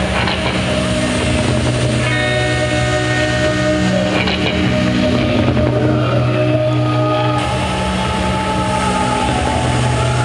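Rock band playing live: held, droning guitar and bass chords at a steady, loud level. The chords shift about two seconds in and again a little past seven seconds.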